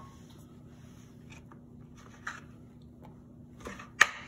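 Quiet kitchen room tone with a steady low hum and a few faint soft knocks. At the very end, a santoku knife strikes a plastic cutting board with one sharp knock.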